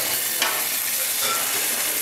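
Halibut fillet sizzling as it sears in a hot sauté pan, with a light tap of the metal fish spatula against the pan about half a second in.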